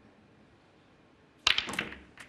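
Snooker cue tip striking the cue ball about one and a half seconds in, followed at once by a quick run of sharp ball-on-ball clicks and knocks as the black is struck and potted.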